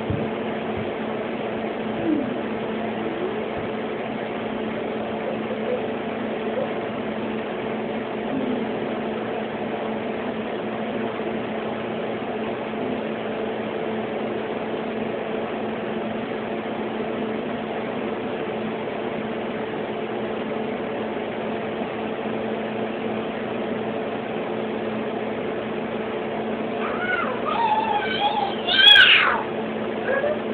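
A blue point Siamese cat meowing near the end, a few quick calls that rise and fall in pitch, over a steady low hum that runs throughout.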